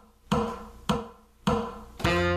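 Saxophone playing three short, detached notes about 0.6 s apart, each sharply attacked and dying away, at the start of an audition piece.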